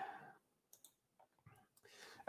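Near silence: a faint breath at the very start, then a few faint, short clicks spread over the rest.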